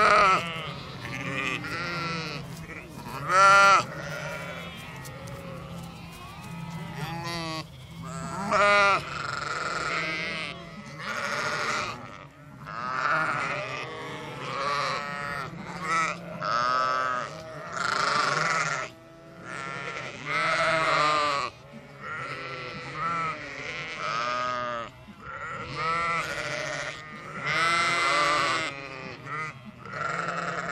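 A flock of sheep bleating: a long run of wavering calls about a second long, some overlapping, following one another with short gaps, over a faint steady low hum.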